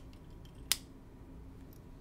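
A single sharp click about two-thirds of a second in: the magnetic cap of a Pineider Avatar UR Twin Tank Touchdown fountain pen snapping shut onto the pen.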